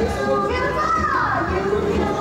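Voices, including a high child-like voice, calling and talking over background music with a low, repeating beat.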